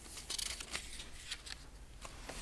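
Sheets of paper rustling and pages being turned, in short crisp rustles that are busiest in the first second.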